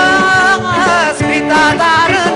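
A male vocalist singing with a live band of electric guitars, bass, keyboard and drums; the voice bends and ornaments its notes over a steady beat.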